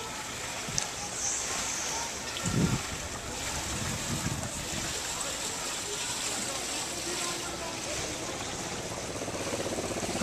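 Pool water splashing and churning from a swimmer's flutter kick at the surface, with a couple of louder low splashes about two and a half and four seconds in.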